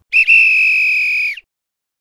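Whistle-like sound effect of a logo sting: a short pip, then one high steady note held for just over a second that dips in pitch as it cuts off.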